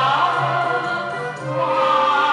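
A Chinese song playing: a held, sliding melody line over steady accompaniment, with a brief dip in loudness near the end.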